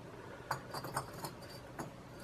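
Faint clicks and light knocks of porous lava rocks touching as one rock is set onto a stack, a few scattered taps spread over the two seconds.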